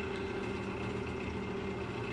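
JET wood lathe running steadily with no tool cutting, its motor giving a constant hum with a faint high whine.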